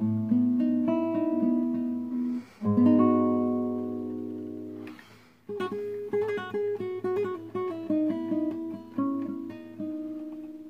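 Solo classical guitar, fingerpicked: ringing chords that fade, with two short breaks, then a quicker run of single plucked notes from about halfway, the last notes left ringing.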